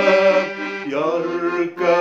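Parrot piano accordion playing sustained chords while a man sings an Arabic hymn melody over it.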